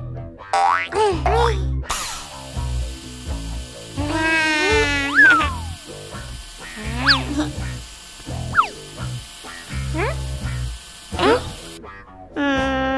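Upbeat children's cartoon background music with a repeating bass beat, overlaid with cartoon sound effects: several quick rising and falling whistle-like glides and boings.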